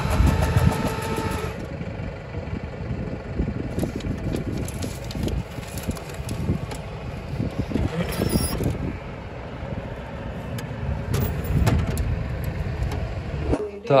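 Street traffic: vehicle engines running and passing in a steady low rumble, with a held engine note in the first second and a half.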